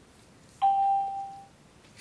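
A single electronic chime: one clear steady tone with a sharp start about half a second in, fading away within about a second.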